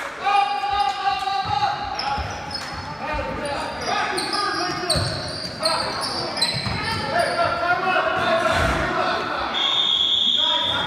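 Basketball game on a hardwood gym floor: a ball bouncing in irregular thuds and sneakers squeaking in many short, high squeals, with spectators' voices in an echoing hall. A long, steady high tone begins near the end.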